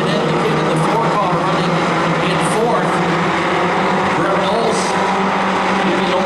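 Four-cylinder pro-stock race cars running in a pack around a short oval, a steady engine drone with several engines rising and falling in pitch as they pass and work through the turns.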